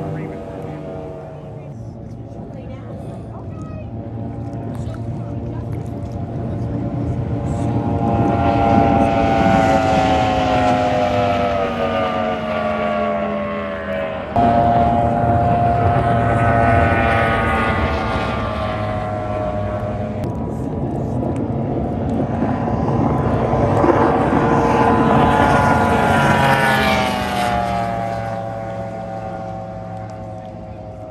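Race boat engines running flat out on high-speed passes, each pass swelling and then falling in pitch as the boat goes by. A new pass starts abruptly about halfway.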